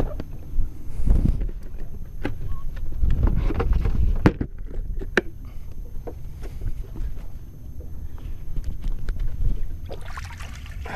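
Wind rumbling on the microphone, with rustling and tearing of a cardboard box as a frozen chum block is pulled out of it, and scattered sharp knocks of handling against the boat.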